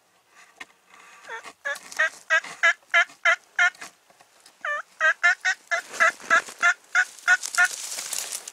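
Wild turkey yelping: two runs of loud, evenly spaced yelps, about three a second, with a short pause between the runs.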